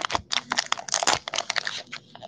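Plastic wrapper of a trading-card value pack crinkling and tearing as it is pulled open by hand, a rapid, irregular run of crackles.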